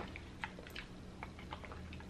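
Faint, scattered light clicks of green-lipped mussel shells being handled by fingertips while eating.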